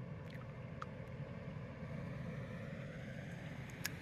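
GMC camper van's engine running with a steady low rumble, with a few faint ticks over it.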